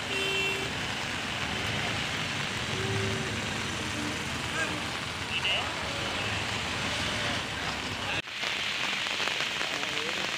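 Steady, hiss-like outdoor noise with a few faint distant voices; the sound drops out for an instant about eight seconds in, then carries on much the same.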